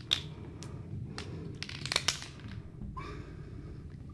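Felt-tip lightboard markers being handled and uncapped: a few sharp clicks in the first two seconds, then a short squeak of a marker tip on the glass about three seconds in.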